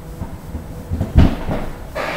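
Handling noise from fiddling with a charger cable and plug close to the microphone: low bumps and rustling, with one loud thump a little over a second in.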